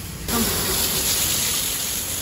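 High-pressure water jet starting about a third of a second in and hissing steadily as it sprays over the dismantled bottle jack's parts, washing off oil and dirt.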